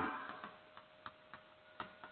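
Chalk clicking faintly against a chalkboard while a word is written: about four short, irregularly spaced ticks over a second or so, the last the loudest, over a faint steady hum.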